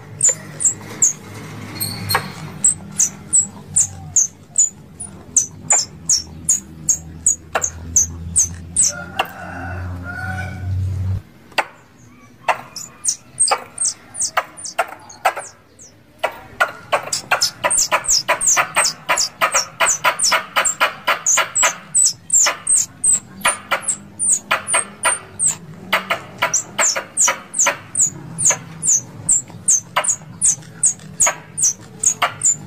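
Plantain squirrels (tupai kelapa) calling: a long run of sharp, high chips, each dropping quickly in pitch, repeated two to three times a second. The calls pause for a few seconds about halfway through, then return in a faster, denser chatter.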